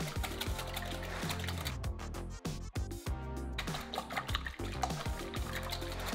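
Wire whisk beating eggs and palm sugar in a glass bowl: quick clicks of the wires against the glass and sloshing liquid, over background music.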